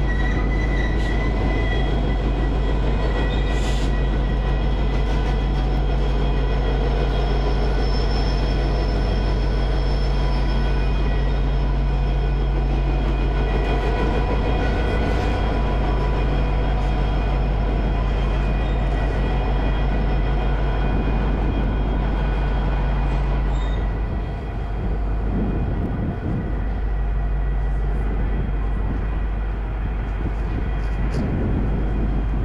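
Norfolk Southern EMD SD40E diesel helper locomotives passing close by, their engines running with a steady deep drone and several steady high whining tones over the rumble of the train. The drone dips briefly late on, then carries on.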